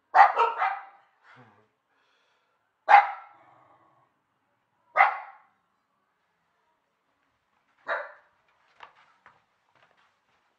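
Dog barking: a quick run of three barks at the start, single barks about three and five seconds in, and a weaker bark near eight seconds, followed by a few faint short sounds.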